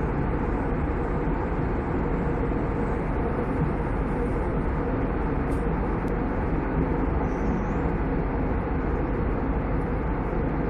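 Steady cabin noise of an airliner in cruise: engine and airflow noise heard from inside the passenger cabin, even and unbroken.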